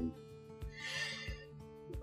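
Soft background guitar music, with a brief hiss about halfway through and a few faint low knocks as small wooden puzzle pieces are handled and fitted together.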